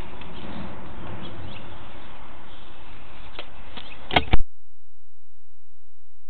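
Scraping, rustling noise with scattered faint clicks as a sewer inspection camera is pulled back through a drain pipe. About four seconds in come two loud sharp clicks, then the noise cuts out and only a faint low hum remains.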